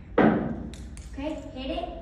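A sudden loud knock just after the start, then a few short sharp clicks and a person's voice in the second half.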